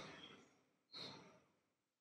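Near silence, with one faint, short breath into a handheld microphone about a second in.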